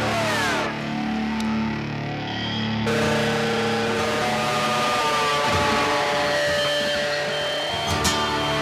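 Instrumental passage of a 1990s alternative rock song: electric guitars with a falling slide at the start. At about three seconds the band comes in fuller and brighter, with long sustained guitar notes slowly gliding downward.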